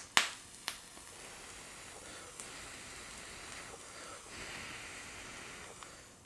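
Long draw on a Kanger Dripbox squonk mod with its 0.2 ohm dual-coil RDA: two sharp clicks right at the start, then a faint, steady, airy hiss of the pull for about five seconds, a little stronger in the second half.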